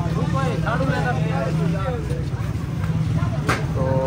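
Steady low rumble of street traffic with people talking in the background, and one sharp click near the end.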